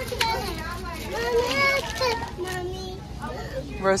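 Young children's high-pitched voices, talking and babbling, with shop background noise.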